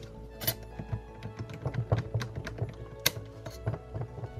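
Clicks and taps from hands working a blade into the clamp of a cordless jigsaw/sabre saw, metal blade against the tool's metal shoe and plastic body. Two sharper clicks come about half a second in and about three seconds in. Quiet background music plays under it.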